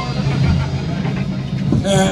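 Live punk rock band playing loudly: a sustained low, droning note from the bass and guitar amps, with a sharp hit near the end.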